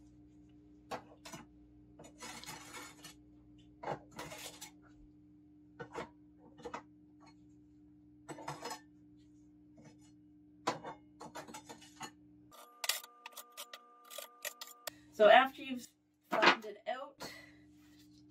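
Metal spatula scraping and tapping across a plastic capsule-filling tray as powder is spread into the capsules, in short irregular strokes over a low steady hum.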